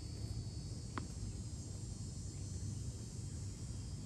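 Steady high-pitched chorus of insects over a low steady hum, with a single sharp knock about a second in.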